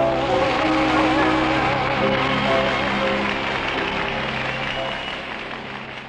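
End of a sung song with piano: the singer's last note, with a wavering vibrato, dies away in the first second. Held piano notes and a dense hiss-like wash carry on and fade out steadily.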